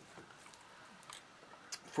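Faint swallowing and lip-smacking sounds as a shot of whiskey is downed, a few soft clicks over a quiet background.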